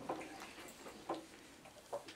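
Three short, faint knocks about a second apart in a quiet small room.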